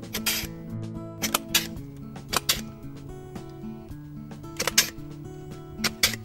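Pruning secateurs snipping dormant grapevine canes: several sharp, irregularly spaced clicks, some in quick pairs. Soft background music with slow, held notes plays underneath.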